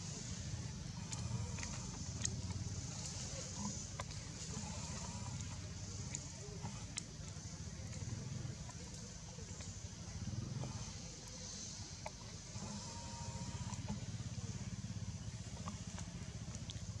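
Steady outdoor background: a low rumble and a high hiss, with a few scattered faint clicks.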